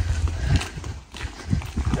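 Footsteps of people walking on a gritty tarmac lane, uneven steps over a low rumble.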